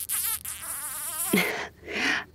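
A man making a drawn-out smooching sound through puckered lips, its pitch wavering, which stops about a second and a half in. A short vocal sound follows near the end.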